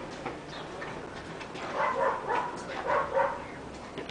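Two short runs of pitched animal calls, about two and three seconds in.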